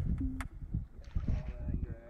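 Wind on the microphone and water slapping a kayak during a fight with a hooked fish: a steady low rumble, with a couple of sharp clicks and a brief low hum in the first half second and faint wavering tones in the second half.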